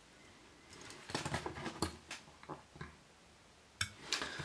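Faint handling sounds at a fly-tying vise: scattered small clicks and rustles of fingers working the thread, with one sharper click near the end.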